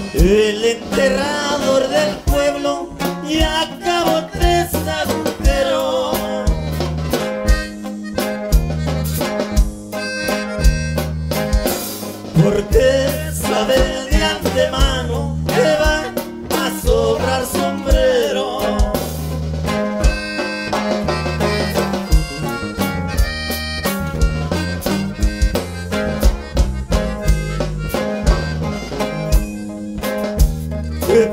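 Norteño band music played live: an accordion carries the melody over bajo sexto, bass and drums keeping a steady beat.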